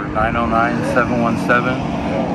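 A man talking, over a steady low engine drone.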